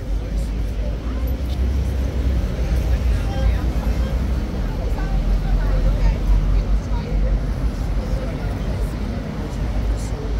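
Tourists chatting in the background over a steady, loud low rumble of outdoor city noise.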